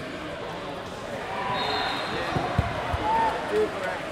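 Voices of many people chattering in a large hall, with a few dull thuds a little past halfway.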